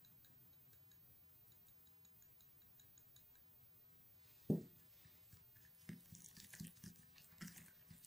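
Near silence at first, then a single knock about four and a half seconds in, followed by faint, irregular scraping and clicking as a plastic spoon stirs powdered milk into an oily turmeric paste in a small glass bowl.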